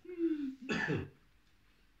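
A man clearing his throat once, about three-quarters of a second in, just after a short low hum.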